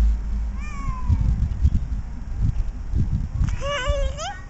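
A toddler's high-pitched squeals: a short falling one about half a second in and a longer, wavering one near the end. Low rumbling noise sits on the microphone throughout.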